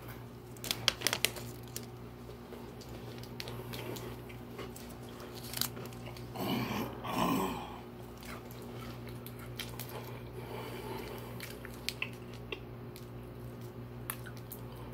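Chewing of a mini Twix bar close to the microphone, with a few sharp crunches near the start and near the end. There is a short muffled hum of the voice a little past halfway.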